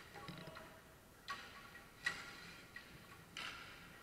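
Faint, distant clacks of hockey sticks striking the puck and the floor during play, three of them, the sharpest about two seconds in.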